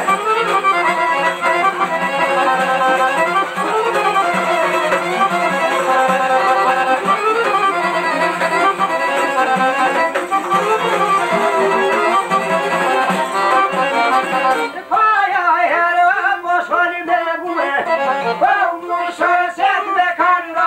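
Albanian folk ensemble playing: violin and accordion over plucked long-necked lutes (sharki and çifteli). About three-quarters of the way through the music dips briefly and turns sparser, with sharper plucked notes.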